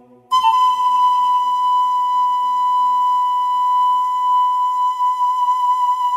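Background music: one long held high note, entering about a third of a second in and sustained steadily, over a softer lower chord that fades away.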